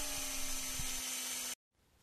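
Small hand-held electric mini drill running with a steady hum as it bores a hole into a small model part; the sound cuts off suddenly about one and a half seconds in.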